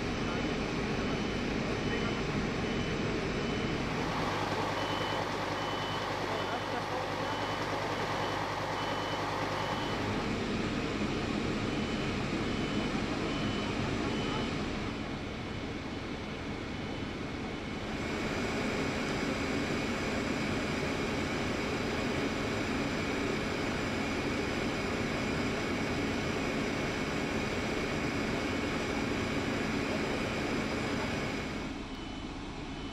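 Heavy truck engines running steadily, with a high-pitched warning beeper repeating at an even pace through the first half.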